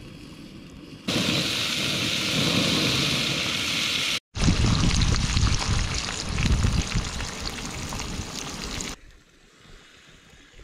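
Eggs frying in a cast-iron skillet on a camp stove: a loud, steady sizzle with fine crackling that starts abruptly about a second in, breaks off for an instant midway, and stops suddenly near the end.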